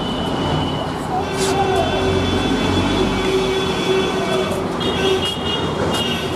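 Urban street ambience: a steady traffic rumble with voices in the background, and a long held tone through the middle.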